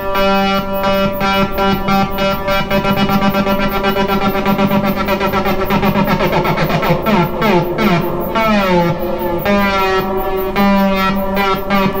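Behringer 2600 analog synthesizer holding one sustained note, its oscillators stacked into a thick tone with a fast, even vibrato wobble. Partway through, the overtones sweep and glide past each other in a phasing swirl before the note settles again.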